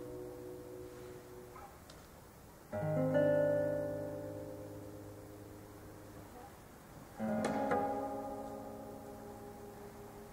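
Classical guitar playing slow chords: one fades out at the start, a new chord is struck about three seconds in and another about seven seconds in, each left to ring and slowly die away.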